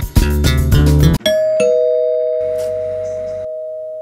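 Guitar-and-bass music cuts off about a second in, followed by a two-note ding-dong doorbell chime, a high note then a lower one, both ringing on and slowly fading.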